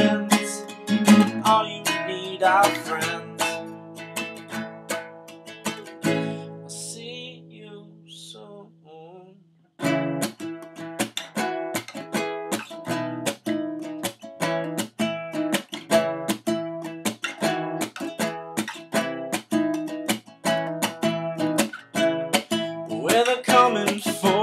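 Capoed acoustic guitar playing an instrumental passage: the first notes ring and die away almost to silence about ten seconds in, then the playing comes back suddenly in a steady rhythm of strokes.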